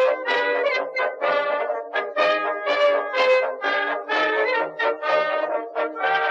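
Background music of brass instruments playing a quick run of short notes.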